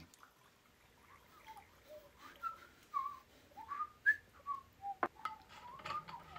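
Whistling: a string of short whistled notes at changing pitches, some gliding up or down. A single sharp click comes about five seconds in.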